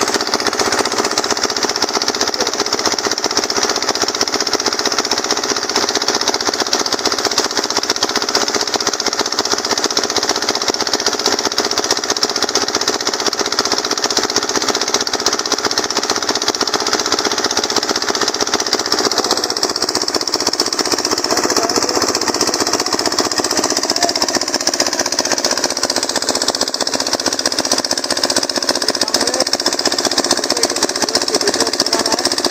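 Heavy water gushing from a tube-well outlet pipe and splashing into a concrete tank, with a fast, steady mechanical knocking underneath.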